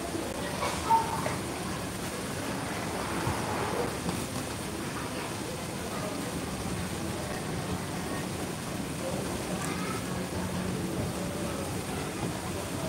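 Water churning and bubbling steadily in a koi pond, with a brief high-pitched sound about a second in.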